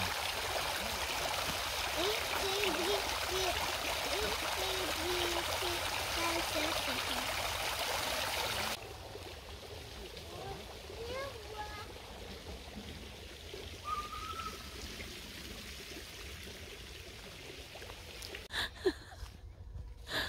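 Water jets from several small pipe fountains splashing steadily into a pond, cutting off abruptly about nine seconds in to a much quieter background with a few faint calls.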